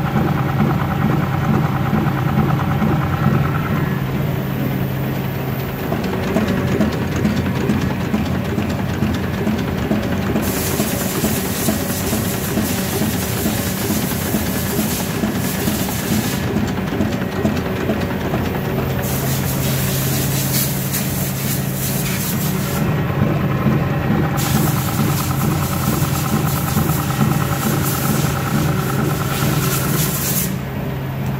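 KBA Rapida 74 four-colour sheetfed offset printing press with coating unit, running steadily. It gives a loud, even mechanical drone with a constant low hum. A hiss comes and goes several times from about a third of the way in.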